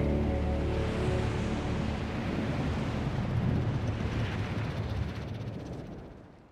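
Film soundtrack: held low musical notes under a deep, surf-like rumbling swell, which fades out near the end.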